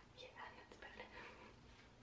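Near silence: a soft, breathy spoken "yeah" near the start, then faint room tone.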